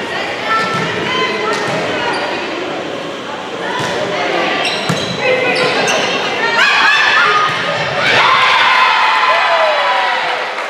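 Volleyball rally in an echoing gymnasium: the ball being hit several times, with players' and spectators' voices, loudest in the last couple of seconds as the rally ends.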